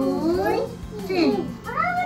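Young children's voices in a sing-song chant, the pitch sliding up and down in long glides.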